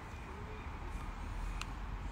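Low, steady outdoor background rumble, with one short click about one and a half seconds in.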